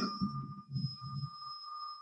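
A pause in speech: quiet room tone with two steady high-pitched tones and a faint low murmur that dies away near the end.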